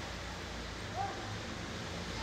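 A car driving slowly through floodwater: a steady wash of water with the engine's low hum beneath it.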